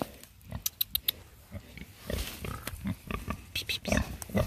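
Pig grunting repeatedly in short low grunts as it roots with its snout in the dirt, after a few sharp clicks about a second in.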